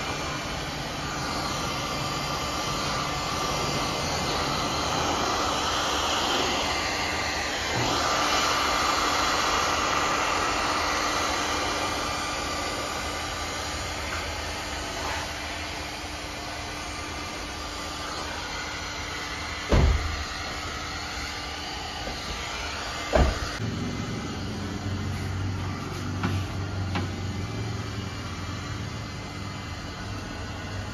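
Electric heat gun blowing steadily while heating paint protection film at the edge of a car's boot lid. Two sharp knocks come about two-thirds of the way through.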